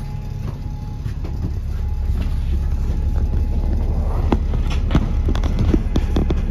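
On-board sound of a VDL DB300 double-decker bus (Wright Gemini 2 body) heard from the upper deck: the diesel engine runs low and steady, growing gradually louder. Sharp rattles and knocks from the body and fittings come in the second half.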